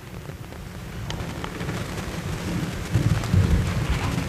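A low rumbling noise with a hiss over it and a few faint ticks, growing louder in the second half.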